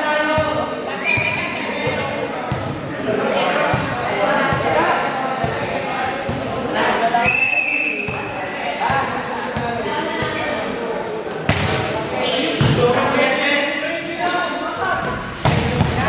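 Volleyball being hit and bouncing on a hard indoor court, a run of sharp smacks and thuds, the two loudest about two-thirds of the way through and just before the end. Players' voices shout and chatter throughout, echoing in a large hall.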